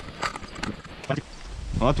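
Stunt scooter wheels rolling along a path, with a few light clicks, then a low rumble from about a second and a half in as they run onto brick paving.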